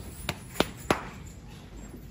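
A bare hand slapping the back of a fattened brown-and-white bull calf: three quick, firm pats about a third of a second apart in the first second. The pats show off how broad and well-fleshed the calf's back is.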